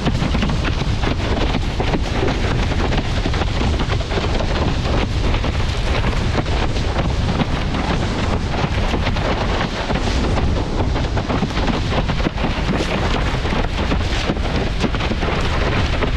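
Heavy wind buffeting the microphone, mixed with water rushing and splashing under a windsurf board moving across choppy water; a steady, loud rumble with irregular spatters throughout.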